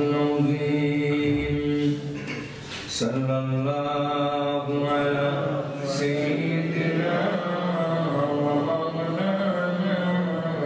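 A man's voice chanting a melodic Islamic recitation, holding long drawn-out notes, with a breath pause about two to three seconds in.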